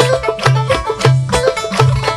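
Turkish folk dance music led by a bağlama (long-necked saz), played with quick, rhythmic strumming over a repeating low note.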